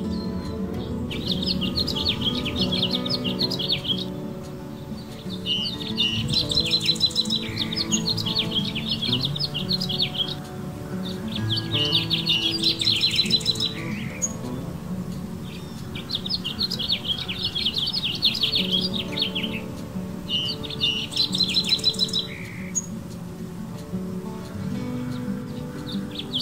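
Bouts of rapid, trilled bird chirps, each lasting two to four seconds and recurring about every five seconds, over background music with steady held notes.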